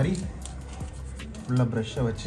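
A voice sounds twice, briefly, at the start and again near the end, over background music. Between the voice sounds are faint light clicks and scratches from a toothbrush scrubbing a motorcycle chain and sprocket.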